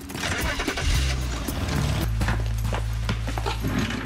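A car engine starting and pulling away, under background music with a low, steady bass.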